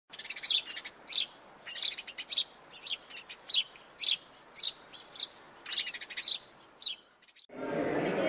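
Birds chirping: a run of short, sharp, high chirps repeating about twice a second, stopping about seven seconds in.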